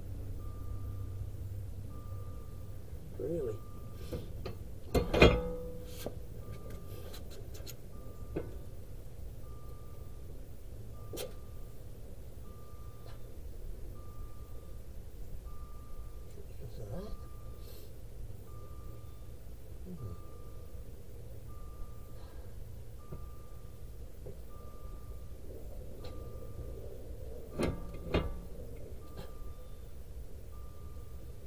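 An electronic warning beep, a single steady tone repeating about every one and a half seconds. A loud clunk about five seconds in and a few knocks near the end come from work on the brake caliper.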